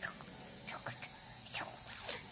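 Faint whispered speech, a few short soft sounds at a time.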